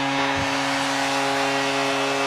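Tampa Bay Lightning's arena goal horn sounding one steady low tone, signalling a home goal, with the crowd cheering under it.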